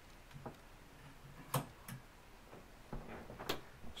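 Scattered clicks and knocks of a handheld camera being carried and moved about while walking through a small room, the loudest about one and a half seconds in, over faint room tone.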